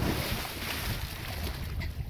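A person jumping into open lake water: a big splash on hitting the surface, then about a second and a half of churning, spraying water as she goes under and comes back up, fading near the end.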